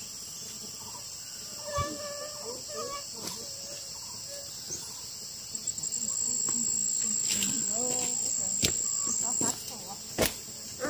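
Insects chirring steadily at a high pitch; about six seconds in one grows much louder, holds, then stops abruptly shortly before the end. Faint voices and a few sharp clicks sit beneath it.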